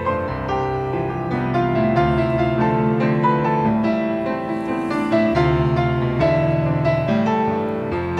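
Grand piano playing a slow instrumental interlude of a hymn between sung verses, its chords changing every second or so.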